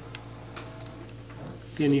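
A few faint clicks from a barrel power plug being pushed into a small robot's control board, over a steady low hum.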